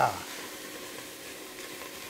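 Diced red onion sizzling faintly and steadily in a hot stainless-steel pot, being dry-sautéed without oil and stirred with a silicone spatula-spoon.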